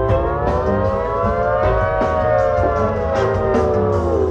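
Jam band playing instrumentally at a soundcheck, heard through an audience recording: a long held chord glides slowly up in pitch and back down, over bass and scattered drum hits.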